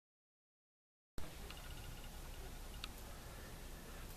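Dead silence for about the first second, then faint steady room tone: a hiss with a low hum, broken by a couple of faint ticks.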